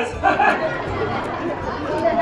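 Theatre audience laughing, with a murmur of voices chattering.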